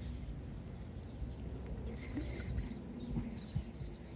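Birds chirping faintly over a low, steady outdoor rumble.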